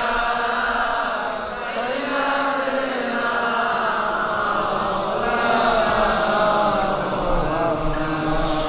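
A large congregation of men chanting together in unison, a drawn-out religious refrain in answer to the preacher's call.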